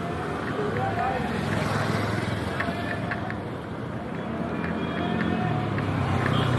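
City street ambience: motorbike and other traffic engines running, with people talking in the background.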